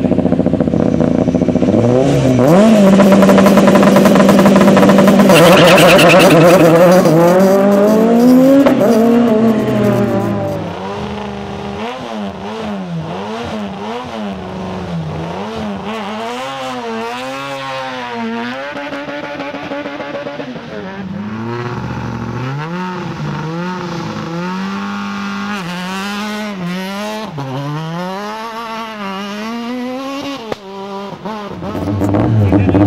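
Kit-Car and S1600 rally car engines revving hard. A very loud first stretch climbs to high revs, holds one steady pitch for a few seconds, then sweeps up and down. From about ten seconds in, quieter repeated rises and falls follow as a car accelerates, changes gear and lifts off.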